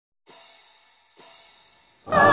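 Two quiet cymbal strikes about a second apart, each ringing out with a high shimmer that fades away. This is the opening of a piece of music.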